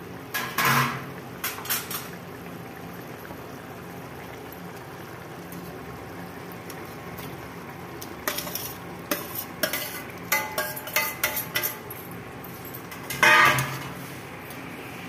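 Metal utensils clinking and scraping against a kadhai as chopped potatoes and pointed gourd are tipped from a metal dish into boiling masala water: two short clatters at the start, a run of sharp clinks from about eight seconds, and the loudest clatter near the end.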